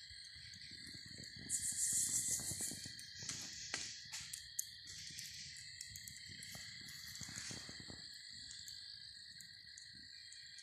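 A steady chorus of night insects trilling at two high pitches, with a brief hiss and a few sharp pops from a wood campfire burning down to coals.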